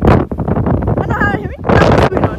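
Strong wind buffeting a phone's microphone: loud, rough rumbling with gusts that thud against it, with a short burst of a voice a little past the middle.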